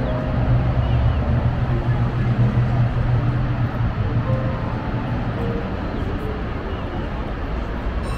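A steady low mechanical hum over a broad, even rushing noise, the hum fading out a little past halfway through.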